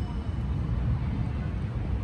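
Outdoor city ambience: a steady low rumble of distant traffic, with faint voices in the background.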